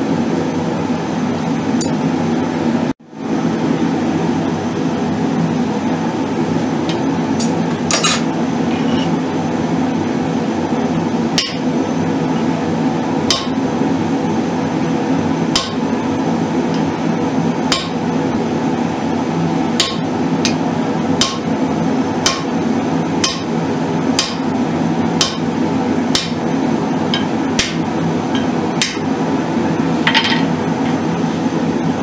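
Blacksmith's hand hammer striking hot steel on an anvil: single sharp blows, sparse at first and then about one a second in the second half. A steady hum runs underneath.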